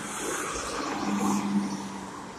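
A motor vehicle passing by: a steady low hum under a rushing noise that builds to a peak about a second and a half in, then fades.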